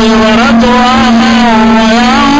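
A man chanting Qur'anic recitation in long, drawn-out melodic lines, with a steady hum underneath.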